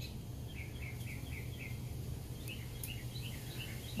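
Faint bird chirping: two runs of short, quick chirps, several a second, over a steady low background hum.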